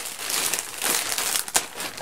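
Plastic packaging crinkling irregularly as a bag is lifted and handled, with one sharp click about one and a half seconds in.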